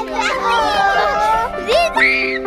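Children's high, excited voices shouting and chattering over background music with sustained notes.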